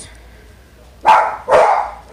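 Dog barking twice, two short loud barks about half a second apart, starting about a second in.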